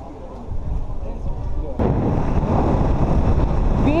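A low background rumble, then, a little under two seconds in, a sudden switch to loud, steady wind rush buffeting the microphone of an onboard camera on a motorcycle riding at speed.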